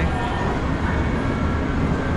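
Steady low rumbling background noise with no single clear source, with faint distant voices.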